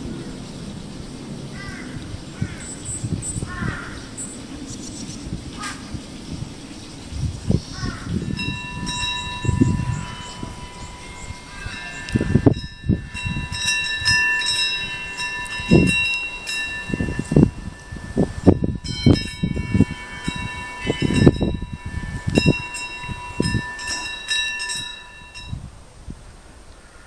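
Small metal bells ringing in a steady, shimmering cluster of high tones that sets in about a third of the way through and holds until just before the end, over repeated gusts of wind buffeting the microphone. A crow caws a few times in the first seconds.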